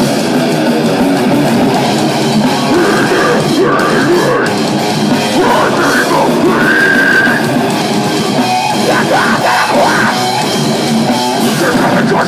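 Loud live heavy metal band playing without pause: distorted electric guitars over a drum kit.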